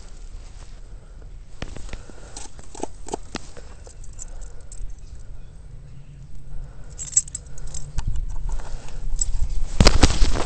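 Handling noise: irregular knocks, crunches and rustles, with a loud cluster of knocks near the end.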